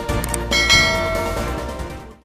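Background music with a bright bell chime sound effect about half a second in, the loudest moment, ringing out over the music as it fades near the end.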